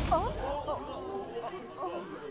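A crowd of people murmuring and chattering with overlapping voices in a hall.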